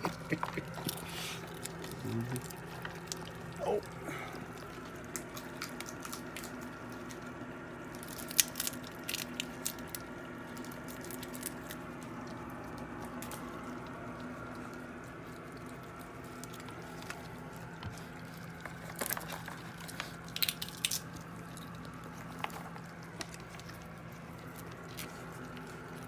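Skunks and raccoons eating peanuts and seed on a wooden deck: scattered crunching and chewing clicks, over a steady low hum.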